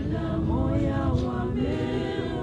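A group of voices singing together unaccompanied, a slow song in long held notes that slide from one pitch to the next.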